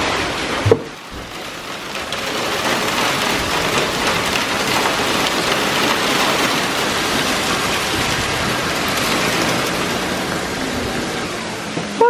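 Heavy rain mixed with hail pelting the driveway and a car outside an open garage door: a dense, steady patter that builds about two seconds in, with a single sharp knock just under a second in.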